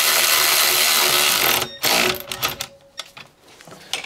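Cordless power ratchet spinning a brake caliper carrier bracket bolt in for nearly two seconds, then a few sharp clicks as it seats.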